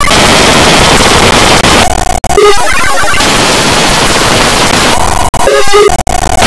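Extremely loud, heavily distorted and clipped noise filling the sound, with brief snatches of a distorted pitched tone about two seconds in and again near the end.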